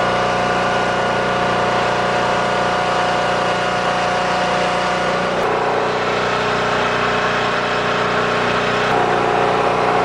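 Engines of an electrofishing boat running steadily, a constant hum with several fixed tones. The pitch pattern shifts slightly about five and a half seconds in and again near the end.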